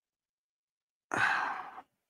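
A man sighs once, a short breathy exhale about a second in that fades away.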